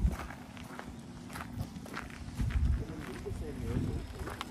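Footsteps on dry grass and dirt as the person filming walks up to the plaque, with faint voices in the background.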